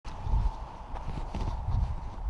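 Irregular low thumps of footsteps on soft ground and handling of the handheld camera as someone walks.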